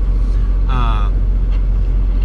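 Steady low rumble of a Volvo semi-truck's diesel engine idling, heard inside the cab. A brief gliding voice-like sound comes about three-quarters of a second in.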